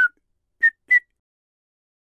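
Three short, high whistled notes in the first second: a person whistling to call a dog back.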